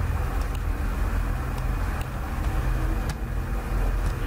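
Steady low background rumble, with a few faint clicks scattered through it.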